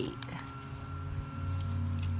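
A low, steady engine hum that grows a little louder about a second in.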